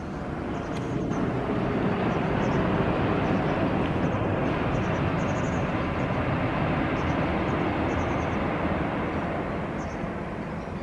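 The rumble of a passing vehicle swells over the first few seconds, holds, and fades slowly toward the end. Faint, short, high chirps of white wagtails come through over it several times.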